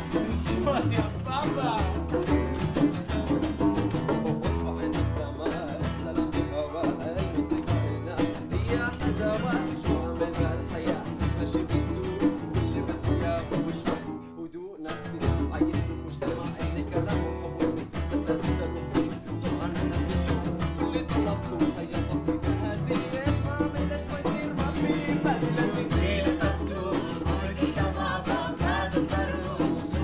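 Live acoustic band playing a song: acoustic guitar strumming over a steady hand-drum beat, with several voices singing in Arabic. About halfway through, the music drops out for under a second, then comes straight back.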